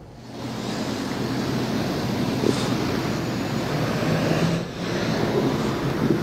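Steady traffic noise on a city street, with vehicles running past, picked up by a reporter's open microphone. It cuts in suddenly a moment in as the live remote audio is switched on.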